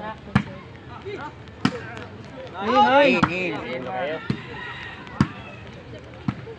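A volleyball being struck with hands and forearms during a rally: about five sharp slaps spaced roughly a second apart. A voice shouts loudly about three seconds in, over steady crowd noise.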